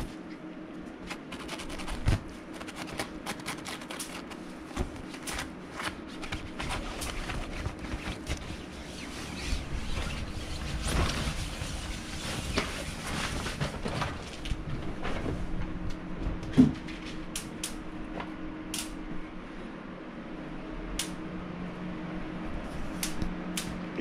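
A pet fox scrabbling and rolling on fabric inside a play tent, making rustling and scratching, mixed with sharp crackling snaps from an air ionizer as fox hair caught in it gets zapped. The crisp snaps are most distinct in the last third, with one louder snap about two-thirds of the way in, over a steady low hum.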